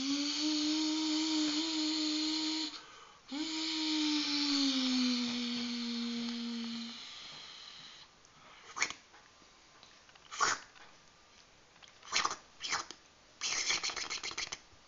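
Two long, drawn-out vocal tones, the second sliding down in pitch as it fades, followed by a few light clicks and scrapes of a plastic feeding spoon.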